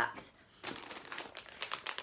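Plastic toy packet crinkling as it is pulled out and handled: a dense run of small crackles from about half a second in.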